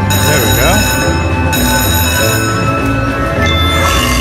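Buffalo Gold slot machine's free-games music and bonus sound effects: ringing chime tones for the first second or so, with a short swooping, voice-like effect about half a second in as a buffalo symbol lands on the reels.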